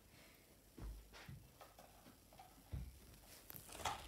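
Faint handling sounds as a child moves about and sets plastic catch cones down on a sofa: two soft thumps, about a second in and near three seconds, then a few light clicks near the end.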